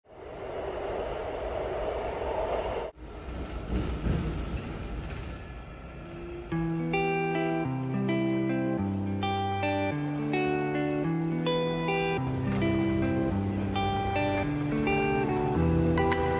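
Noise from inside a moving AREX airport railroad train car, broken by a sudden cut about three seconds in. About six seconds in, calm background music with short picked notes over sustained bass notes begins and becomes the main sound.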